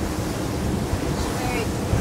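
Steady rush of wind and water from a fast-running RIB on open sea, with wind buffeting the microphone and a low hum of its twin Mercury V12 outboards underneath.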